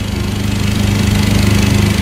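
A small engine running steadily nearby, a constant low-pitched drone with no change in speed.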